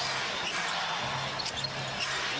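Televised basketball game audio: arena crowd noise with a ball being dribbled on the court.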